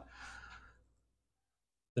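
A faint, short breath lasting about half a second, then dead silence.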